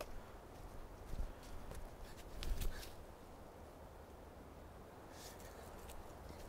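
Footsteps crunching through dry fallen leaves, ending about two and a half seconds in with a heavier thud and rustle as a man drops to his knees in the leaf litter.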